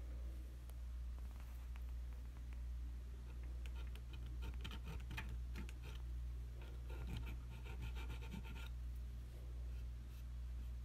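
Thin needle file scraping between a resin ball-jointed doll's toes in short, quick strokes, starting a few seconds in and stopping shortly before the end, over a steady low hum. The filing opens a gap between the big toe and the next so the foot can wear thonged sandals.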